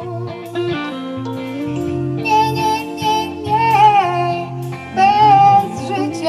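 Band playing an instrumental passage: electric guitars and keyboard over long held chords, with a high melody line that wavers and bends in pitch.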